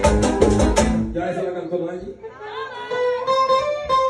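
Live bachata band playing: guitar, bass and percussion keep a steady beat, then the bass and percussion drop out about a second in, leaving guitar lines and a voice.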